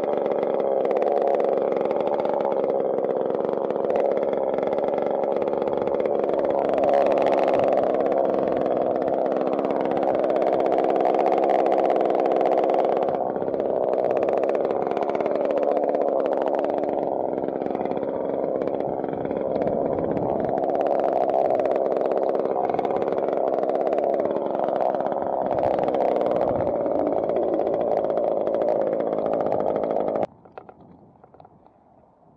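Chainsaw engine running steadily at constant speed, then stopping abruptly near the end.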